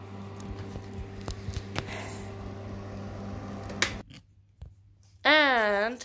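Snips and clicks of scissors cutting cardboard over a steady electric hum. The hum cuts off suddenly about four seconds in. Near the end there is a short high-pitched vocal sound that swoops up and down.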